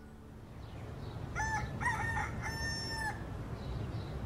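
Rooster crowing once: a cock-a-doodle-doo of a few short notes ending in a long held note, over a low steady rumble.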